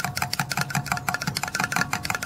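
Metal spoon clinking rapidly against the inside of a glass jar while stirring a milky solution, about six or seven clinks a second, each with a short ringing tone. The spoon is stirring in urea to dissolve it.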